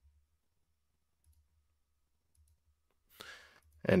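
Near silence for about three seconds, then a brief faint sound just before a man starts speaking near the end.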